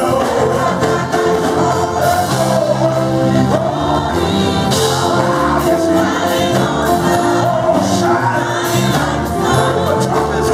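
Live gospel praise-and-worship music: a choir and lead singers on microphones singing over a church band with keyboard and bass guitar, playing steadily without a break.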